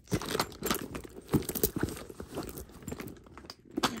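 Hand rummaging in an empty fabric-lined leather handbag and shifting the bag about: a quick run of crinkly rustles and small clicks in the first two seconds, then sparser handling noise.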